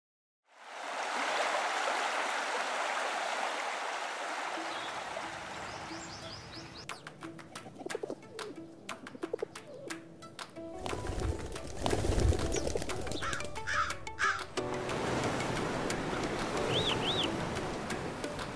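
Sea surf washing on a beach, with a quiet music bed holding a sustained low note. Birds call over the surf in the second half, with two short high chirps near the end.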